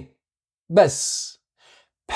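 A man's short voiced sound that trails off into a breathy exhale, like a sigh, about a second in, between spoken phrases.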